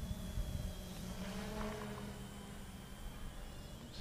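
Radio-controlled model airplane flying at a distance overhead: its motor and propeller make a faint, steady drone.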